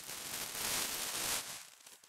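Tissue paper rustling and crinkling as a gift is unwrapped by hand. The rustle dies away near the end.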